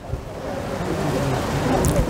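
Wind rushing over outdoor microphones, a noise that swells steadily louder.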